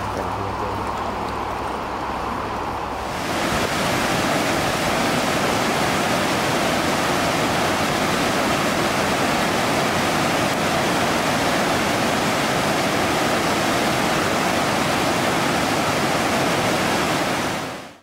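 River water rushing over rocks in a rapid, a loud steady rush that starts abruptly about three seconds in and fades out at the end. Before it, quieter water sound with a low steady hum underneath.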